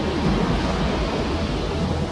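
A steady low rumble with a rushing hiss over it, holding even without breaks.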